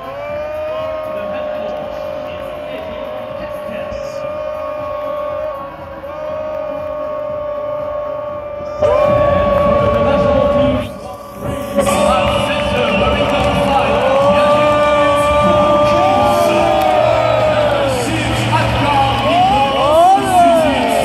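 Arena music over the PA with long held notes, joined about nine seconds in by a louder crowd cheering and whooping.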